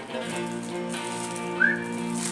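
Background music: a held chord of steady notes, with one short high note sliding upward near the end.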